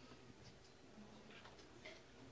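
Near silence: quiet room tone with a few faint small ticks.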